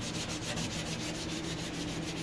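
Nylon scouring pad scrubbing a white enamel stovetop around a burner ring with abrasive cleaning paste, in quick, regular back-and-forth strokes.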